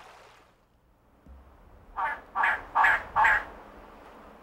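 Elegant trogon calling: four short notes in quick succession, evenly spaced, starting about halfway through.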